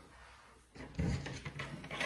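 Handling noise as multimeter test leads are picked up: a run of short knocks and clatter beginning a little under a second in.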